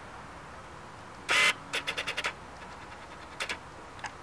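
A short rustle about a second in, then a quick run of about six clicks and two more clicks a second later: something being handled close to the microphone, over faint room hiss.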